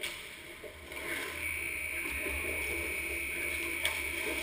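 Ice hockey skate blades scraping and gliding on rink ice as skaters close in on the goal, a steady hiss that swells about a second in. A sharp stick or puck click on the ice near the end.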